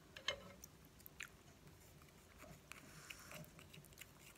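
Faint clicks and light scrapes of wooden chopsticks against a small glass jar as chili paste is scooped out onto the noodles, over near silence; the sharpest click comes about a third of a second in.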